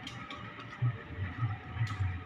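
Train wheels knocking over rail joints and points as a diesel-hauled passenger train rolls through the station: irregular heavy low thuds with a few sharp clicks between them.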